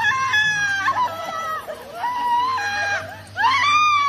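A woman screaming and wailing in fright: a string of long, high-pitched cries, the last one rising and the loudest near the end.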